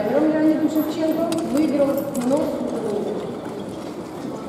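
A person's voice with drawn-out, wavering pitched sounds, fading out about halfway through.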